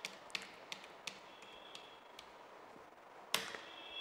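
Several light key clicks as the Tab key is pressed repeatedly, with a sharper click near the end.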